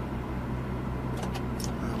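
Truck engine running steadily at low road speed, a low even drone with road noise heard from inside the cab.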